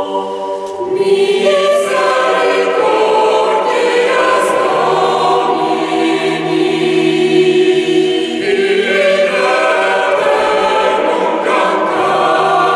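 Mixed choir of women's and men's voices singing a cappella, holding long chords that shift slowly from one to the next.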